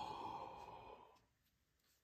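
A man's long breathy sigh that trails off about a second in: a sigh of emotion over a prized card.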